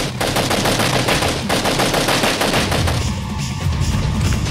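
Rapid automatic gunfire from an action-film scene, mixed with the film's background music; the firing dies down about three seconds in.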